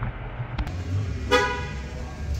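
One short vehicle horn toot, a quarter-second beep about halfway through, over a low rumble.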